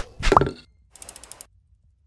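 Animated logo sting sound effects: a sharp click, then a short pop with a quick upward pitch glide, followed by a few faint, rapid high ticks about a second in. The sound then stops and there is silence.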